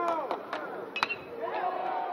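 A metal baseball bat striking a pitched ball about a second in: one sharp ping with a brief high ring, over the murmur of the crowd.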